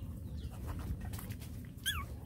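A puppy gives one short, high squeak that falls in pitch near the end, over a steady low rumble and a few faint clicks.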